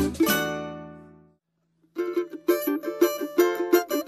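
A samba band's last chord ringing out and fading away to silence within the first second and a half; about half a second later a cavaquinho starts a quick picked intro riff.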